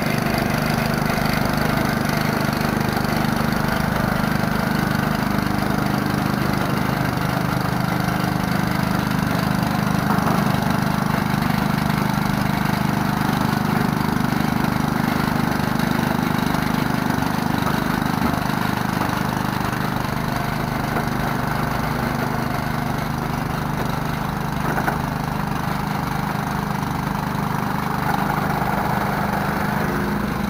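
Toyota forklift's engine running at a steady speed, heard close up from the machine itself, as the forklift reverses slowly out of a shipping container.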